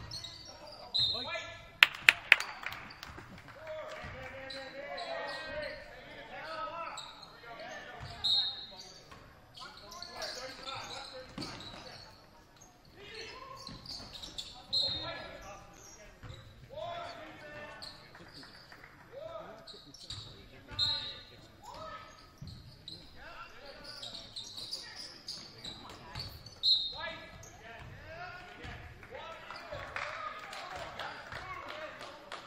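Basketball game in a reverberant gym: players and spectators shouting and calling out, the ball bouncing on the hardwood court and short high sneaker squeaks now and then. Three sharp knocks come close together about two seconds in.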